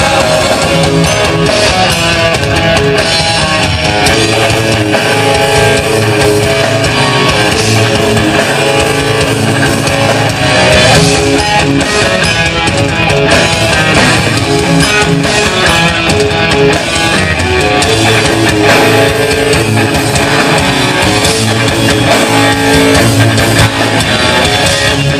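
Heavy metal band playing live and loud: an electric guitar lead over distorted rhythm guitar, bass and drum kit, with no vocals.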